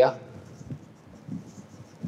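A marker pen writing on a whiteboard: faint, short scraping strokes.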